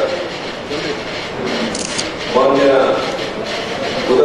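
A man making a speech in Kannada into a microphone, pausing in the first half and resuming a little past the middle.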